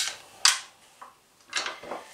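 Small kitchen knives set down one after another on a plastic cutting board, a few light clacks.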